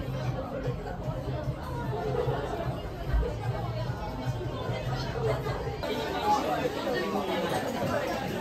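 Indistinct chatter of several people talking at once in a busy restaurant.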